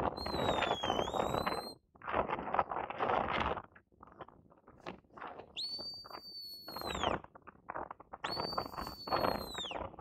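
Three shepherd's whistle commands to a working sheepdog: a first note that dips and rises again, then two longer held notes that each fall away at the end. A loud, gusty rushing noise comes and goes under and between them.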